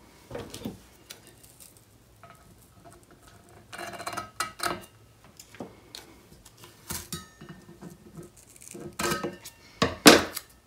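Hand-crafting sounds as washi tape is pulled off its roll and pressed around a painted tumbler: soft rustles of tape and paper between scattered clicks and knocks of scissors and the cup against the table, with the loudest knock at the very end.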